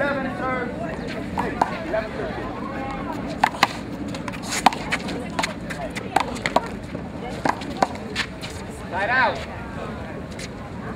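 One-wall handball rally with a Sky Bounce big blue ball: a run of sharp slaps as it is struck by hand and bounces off the wall and concrete court, a fraction of a second to about a second apart, over murmuring voices, with a brief shout near the end.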